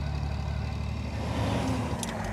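Coal truck's engine running steadily under way, heard from inside the cab.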